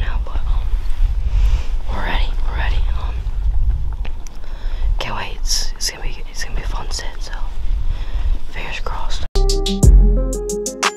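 A person whispering close to the microphone over a steady low rumble. About nine seconds in it cuts abruptly to music.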